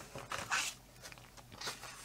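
Paper pages of a coloring book being handled and turned, rustling: a longer rustle in the first second and a shorter swish near the end.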